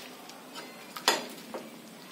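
A steel slotted spoon clinking once against a steel kadhai about a second in, with a fainter tap about half a second later, while nuts are stirred in the pan; otherwise faint room hiss.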